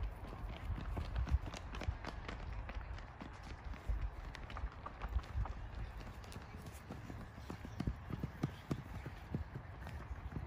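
Children running on dry grass: irregular footfall thuds and scuffs.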